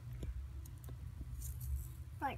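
Faint scattered clicks and light taps from small school-supply items being handled, over a steady low rumble of handling noise.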